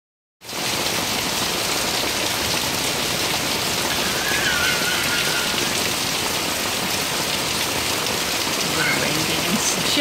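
Heavy rain pouring steadily onto a lawn and a wooden deck: an even, dense hiss of falling rain.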